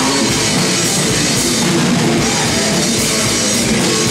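Live rock band playing loud: electric guitars and a Sonor drum kit, a dense, steady wall of sound.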